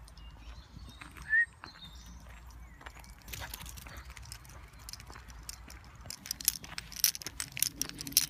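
Footsteps crunching on a gravel track over a low rumble on the microphone; the steps grow louder and closer together from about six seconds in. A short high chirp about a second and a half in is the loudest sound.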